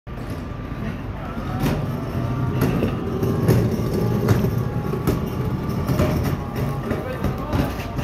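A motorized cooler on wheels rolling over concrete, with a steady low rumble and a thin steady motor whine. Sharp knocks come about once a second as it rolls.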